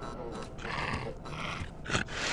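Two short, harsh, animal-like vocal bursts, like a dog or creature growling, followed by a sharp knock just before the end.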